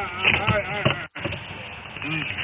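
Officers' voices shouting over the noisy, muffled audio of a police video recording at a traffic stop, with the sound cutting out briefly about a second in.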